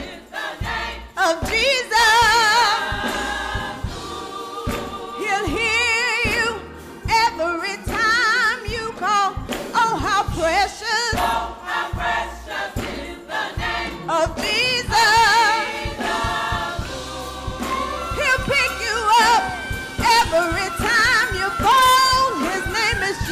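Live gospel music: a woman sings lead into a microphone with wide vibrato and sliding runs, backed by a choir and rhythmic hand clapping.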